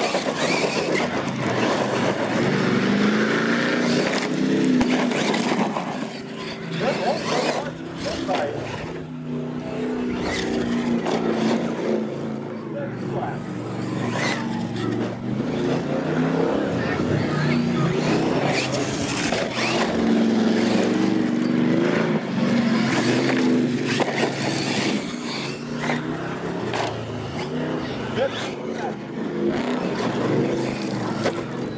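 Radio-controlled monster truck's motor revving up and down as it drives and spins on gravel, with a crowd talking.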